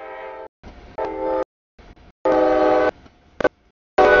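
CSX freight locomotive's air horn sounding at a grade crossing, a chord of steady tones in several blasts, the longest about a second long in the middle, broken by abrupt gaps.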